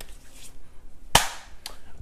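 A single sharp hand clap a little over a second in, followed by a fainter click about half a second later.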